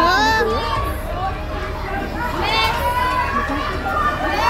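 Schoolchildren shouting and screaming over a steady din of children's voices, with shrill yells about a quarter second in and again at about two and a half seconds.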